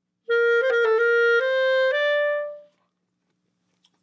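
Clarinet playing a short phrase with a turn ornament: a quick figure of notes around the main note, then longer notes stepping upward, the last held and fading out.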